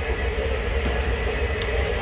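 French fries deep-frying in a round well of bubbling hot oil, a steady sizzle under a steady low rumble and hum.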